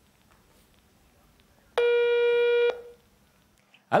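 Telephone ringback tone of an outgoing call waiting to be answered: one steady tone lasting about a second, starting a little under two seconds in.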